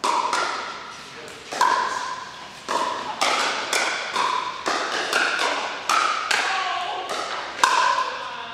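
A pickleball rally: paddles striking a hollow plastic pickleball in a quick, uneven series of sharp pops, about a dozen, each with a short ring, echoing in a large hall.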